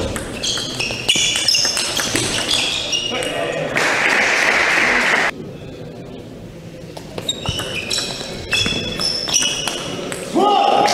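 Table tennis rally: the ball clicks off the bats and table and shoes squeak on the court floor. Once the point ends, a burst of crowd noise lasts about a second and a half and cuts off suddenly. A new rally starts near the end with the same clicks and squeaks.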